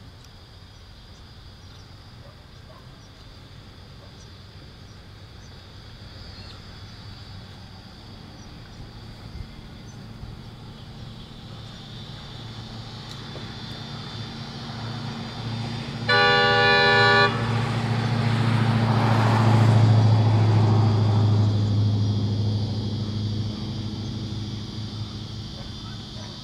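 Pacific National NR class diesel-electric locomotives (GE Cv40-9i, 16-cylinder GE diesel) running light engine, their low diesel rumble growing steadily louder as they approach. The locomotive horn sounds one multi-tone blast of about a second, a little past halfway. The engine rumble is loudest just after the blast, then eases off. Insects chirr faintly and steadily in the background.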